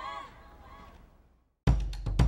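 The last sung note of a pop song, a female voice with wavering pitch, fading away into its echo, then a moment of silence. Near the end a drum beat cuts in suddenly with sharp, regular kick and snare hits.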